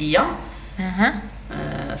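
Short pitched vocal cries: one swoops quickly down in pitch at the start, another rises sharply about a second in, and a low steady drone follows near the end.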